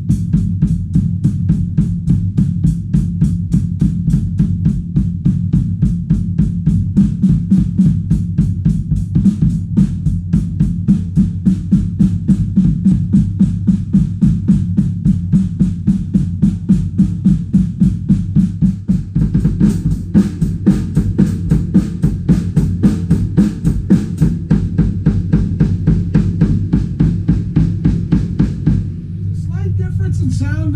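Drum kit played with a double bass-drum pedal: a fast, even stream of kick drum strokes, the right beater landing a little louder than the left. The run stops shortly before the end.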